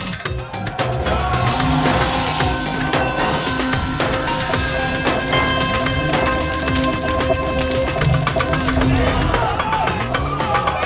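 A film soundtrack: music with long held notes over fast percussion, mixed with layered voices and sound effects. It comes up louder about a second in.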